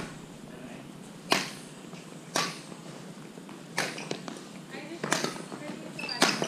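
Badminton rackets striking a shuttlecock in a rally: four sharp hits, each a second or more apart, with fainter clicks between them.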